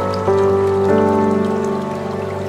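Slow ambient background music, sustained pitched notes changing every half second or so, over a soft rain-like patter.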